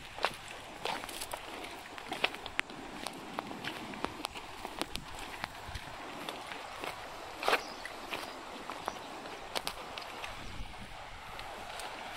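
Irregular sharp clicks and crunches at close range on grass and river cobbles, from a water buffalo calf cropping grass and from hooves and footsteps on the stones, over light outdoor ambience. One louder crack about seven and a half seconds in.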